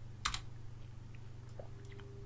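Two quick clicks at a computer, close together about a third of a second in, then a few fainter ticks, over a faint steady low hum.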